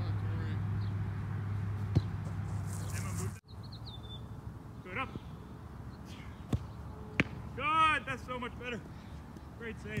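Soccer balls being kicked: four sharp thuds a second or more apart, the loudest about two seconds in. A steady low hum underlies the first third and stops suddenly, and brief shouted calls come near the end.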